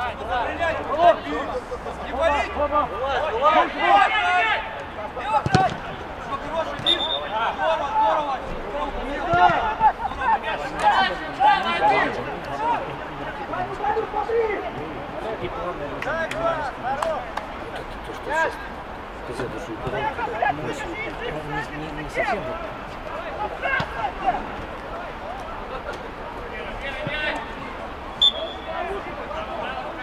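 Footballers on an artificial-turf pitch shouting and calling to each other during play, with a few short thuds of the ball being kicked. The calls are thickest in the first half and thin out later.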